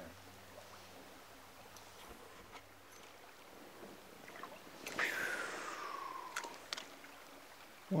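A fishing-rod cast: a sudden swish about five seconds in, then line whirring off the reel, falling steadily in pitch for over a second as the lure flies out, followed by a couple of sharp clicks from the reel. Before the cast there is only a faint background of moving water.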